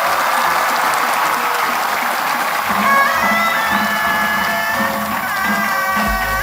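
A large crowd applauding. About halfway through, music with long held notes comes in over the applause.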